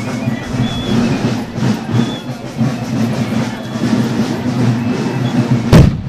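Band music for a folk march playing steadily as the marchers pass, with a single sharp, loud bang near the end.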